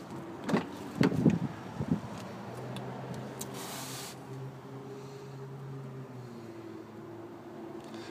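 A few clicks and knocks in the first two seconds as the SUV's rear side door is opened, then a steady low hum.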